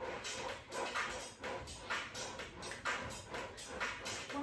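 Background electronic music with a steady beat, about three beats a second.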